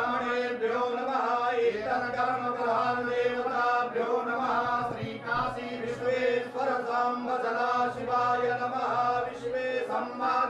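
Hindu priests chanting Sanskrit mantras in a steady, continuous recitation that carries on without a pause.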